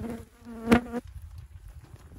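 A fly buzzing close to the microphone for about a second, with a sharp tap near the end before the buzz stops.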